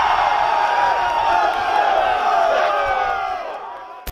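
A team of high school football players shouting and cheering together, many voices held in one long yell that fades out near the end.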